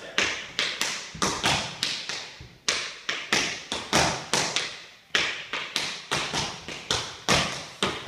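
Tap shoes striking a hardwood floor in a tap dance time-step routine: quick clusters of sharp taps with short pauses between them, about two and a half and five seconds in.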